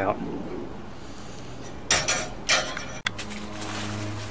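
Two short metallic clatters about half a second apart, as metal hardware is handled. They are followed by an abrupt cut to a steady low hum.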